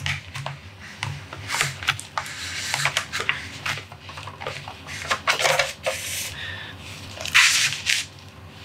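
Handling noises as a Blu-ray case is slid out of a slot in the base of a collectible statue: scrapes, clicks and rustles, with the loudest rustling scrape near the end as the case comes free.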